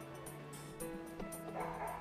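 Background music with a steady beat; a dog gives a short bark about one and a half seconds in.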